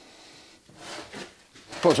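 Quiet workshop room tone with a faint soft rustle about a second in; a man starts speaking near the end.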